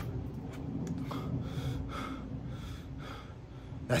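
A man breathing heavily between angry lines, several audible breaths in and out.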